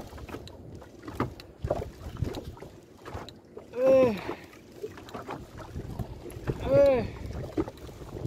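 A man grunting with effort twice, about four and seven seconds in, each a short rising-then-falling 'uhh', while reeling in a heavy fish on a rod and spinning reel, with scattered short knocks and clicks over steady wind and boat noise.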